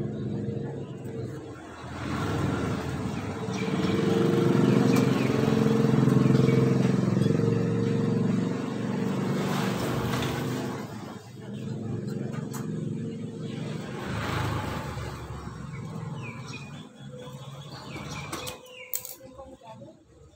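Engine noise of a motor vehicle going by, swelling to its loudest about six seconds in and fading, then a second, weaker rise and fall a few seconds later.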